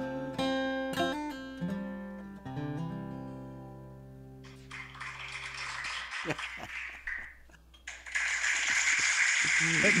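Acoustic guitar's closing chords, struck a few times and left to ring out and fade. About halfway through, recorded applause from a sound-effect machine fades in, breaks off briefly, then comes back louder near the end.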